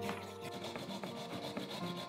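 A whole carrot, skin on, grated on a flat metal grater into a glass bowl: repeated rasping strokes over background music.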